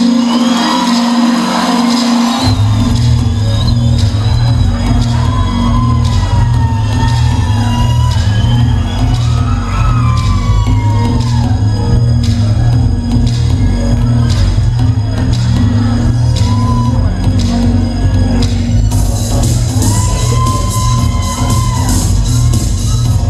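Loud dance music with a heavy, steady bass beat that comes in about two seconds in; brighter cymbal-like beats join near the end.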